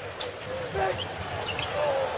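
Basketball being dribbled on a hardwood arena court, over a low murmur of crowd and faint voices, with a short sharp sound about a quarter second in.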